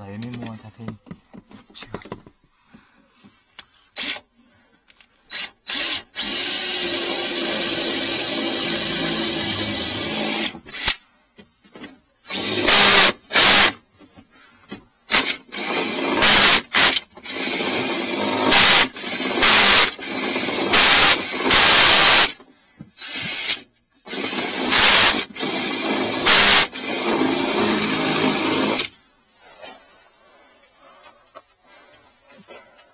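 Cordless drill run in repeated bursts of a few seconds at a time, trigger pulled and released, with a high whine while it spins.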